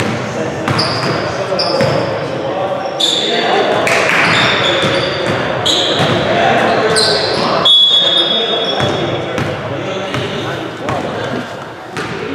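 A basketball bouncing on a wooden gym floor and sneakers squeaking as players run, with players' voices echoing in the large hall.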